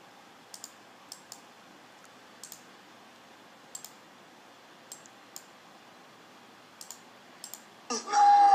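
Computer mouse buttons clicking: a dozen or so sharp, short clicks, most in close pairs, spread through otherwise quiet room tone.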